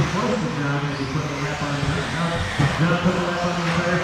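Electric 4WD RC buggies racing, their motors whining, with one whine rising in pitch about a second in, under the race announcer's voice.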